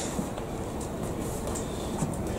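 Steady low room noise of a boxing gym during sparring, with a few faint light knocks. The fading tail of a loud punch impact is heard right at the start.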